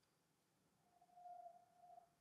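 Near silence, with a very faint thin steady tone in the second half.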